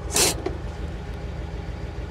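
1953 Pontiac Chieftain's engine idling with an even low pulse, and a short rasp near the start as the parking brake is set.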